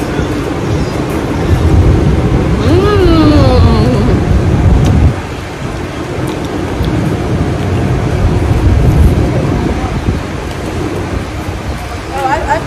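Street traffic and wind buffeting the microphone, a loud low rumble that swells, drops off suddenly about five seconds in, then builds again. A short sound falling in pitch comes at about three seconds.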